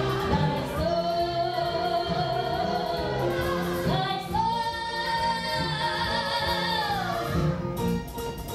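A woman singing a musical-theatre number over instrumental accompaniment, holding one long note with vibrato, then sliding up about four seconds in to a higher long-held note.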